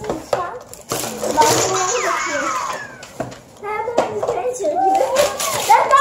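Children's voices talking and exclaiming, with paper leaflets rustling and a few light knocks as a cardboard box and papers are handled.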